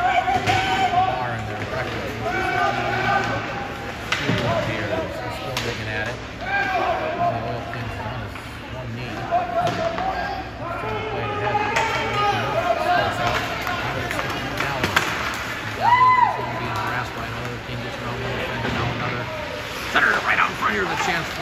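Ice hockey game in a rink: players and spectators calling out, with a few sharp knocks of sticks and puck on the ice and boards, over a steady low hum.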